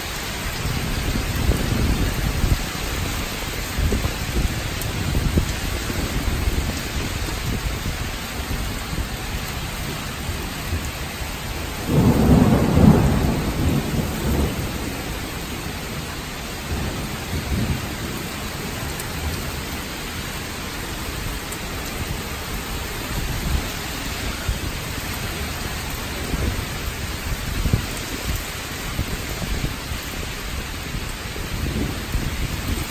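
Heavy rain pouring and strong gusting wind of a downburst thunderstorm, with uneven low surges throughout. A loud low rumble lasting about two seconds comes about twelve seconds in.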